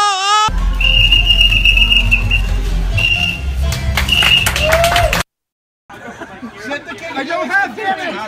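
Loud low rumble of wind on a phone microphone, with a high, steady whistle-like tone that comes and goes and a few sharp clicks, cutting off suddenly; after a short silent gap, several people talk over one another.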